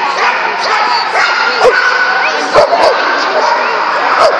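A dog barking several times in short, sharp calls at an agility run, heard over people's chatter in a large echoing hall.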